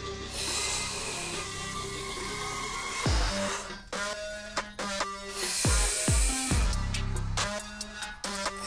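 Electronic dance music. A build-up gives way, about three seconds in, to a deep falling bass hit and then a pulsing beat.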